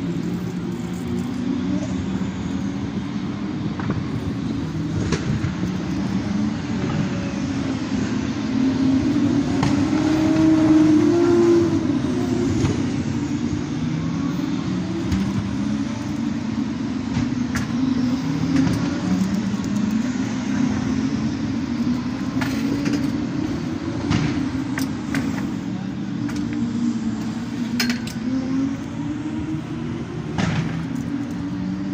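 Motor vehicle engines running steadily, their pitch wavering, with a swell that rises and then falls about ten to twelve seconds in.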